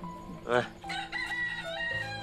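A rooster crowing: a call that begins about half a second in and is held in steps, over soft background music.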